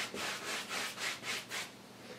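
Wide bristle brush scrubbing oil paint onto a stretched canvas in quick short back-and-forth strokes, about five a second. It stops shortly before the end.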